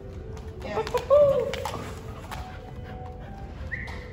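A short, high-pitched vocal call about a second in, its pitch rising and falling, with scattered sharp taps of footsteps and a dog's claws on a rubber training floor.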